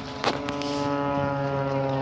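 A boat's horn sounding one long steady note that begins about a quarter of a second in, just after a sharp knock.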